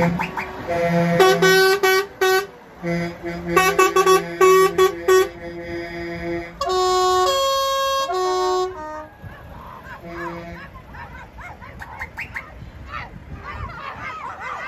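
A lorry's musical air horn plays a tune, first a run of quick short notes and then a few longer held notes, stopping about nine seconds in. Voices follow.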